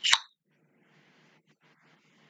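A single short, sharp pop or click just after the start, lasting about a quarter second, followed by faint steady room noise.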